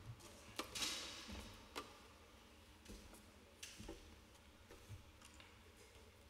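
Near silence in a large church, broken by faint scattered clicks and knocks of people moving about and handling things, with a brief rustle about a second in.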